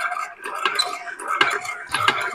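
Hand-cranked stainless-steel food mill being turned, its blade pressing cooked tomatoes through the sieve plate to hold back the skins and seeds. A wet metal scraping with a few sharp metal clicks and knocks against the pot.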